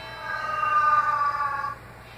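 A single held musical note from the song's audio, one steady pitch with a rich set of overtones that sinks slightly over about a second and a half and then cuts off abruptly.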